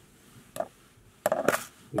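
Small metal fly-tying tools clinking as they are handled on the bench: one light click about half a second in, then a brief, louder metallic clatter about a second and a half in.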